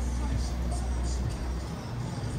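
City street ambience: a steady low rumble of road traffic, with faint voices of people passing by.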